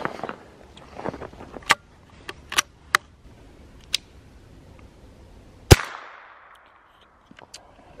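A single shot from a scoped Cricket .22 rifle about three-quarters of the way through, ringing out and fading over about a second. It is a sighting-in shot at a target box to check the scope is on. A few light clicks come before it.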